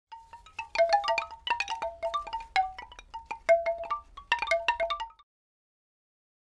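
Short logo jingle made of quick, bright chime notes struck in a tumbling run at a few fixed pitches. It cuts off suddenly a little after five seconds in.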